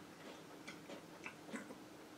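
A few faint, irregular small clicks and ticks against quiet room tone.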